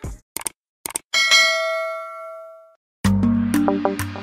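A few short clicks, then a single bell-like ding sound effect that rings and fades out over about a second and a half. Music with a steady beat starts about three seconds in.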